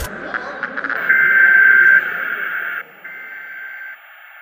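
A TV's steady electronic test-card tone under a 'please stand by' colour-bar screen, loudest for about a second, then quieter, with a short break near the end.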